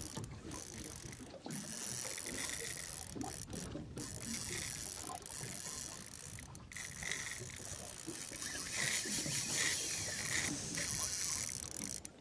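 Shimano Stella spinning reel being wound in against a hooked fish, its gears and mechanism whirring with irregular clicks, over a steady hiss.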